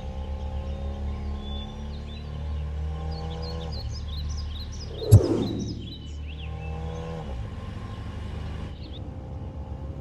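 Film background score of sustained, held notes with birds chirping over it, and a single sharp loud hit about halfway through.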